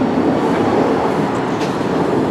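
Loud, steady rumble of a passing heavy vehicle in the street.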